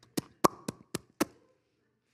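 Five quick mouth pops in a row, about four a second, made with the lips as if sucking olives off the fingertips one by one.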